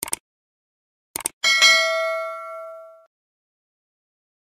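Subscribe-button animation sound effect: short mouse clicks, then, about one and a half seconds in, a bright bell ding that rings and fades out over about a second and a half.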